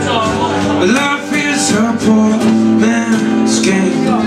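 Live acoustic song: an acoustic guitar strummed steadily with a man singing along.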